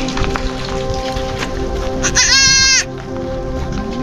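A young goat kid bleats once, a high call just under a second long, about two seconds in, over steady background music.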